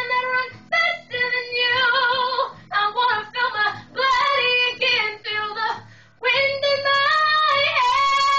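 A young woman singing solo: a wordless run of held notes with vibrato, in short phrases broken by quick breaths, the last note held long from a little after six seconds.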